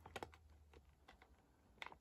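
Near silence with a few faint clicks and crinkles of plastic food pouches being handled, including a small cluster of clicks near the end.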